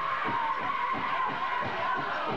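Pow wow big drum struck in a steady beat, about four strokes a second, with high-pitched singers' voices held and bending above it, as in a grand entry song.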